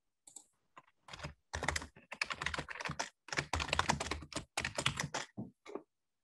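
Typing on a computer keyboard: a quick, dense run of keystrokes starting about a second in and stopping just before the end.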